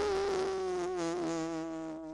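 A baby's trembling, wavering whimper: one long whining note that sinks slowly in pitch with a fast wobble, the build-up to crying.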